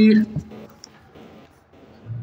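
A man's chanted recitation of Pashto verse through a microphone ends on a long held note about a quarter second in. A quiet pause with a few faint clicks follows.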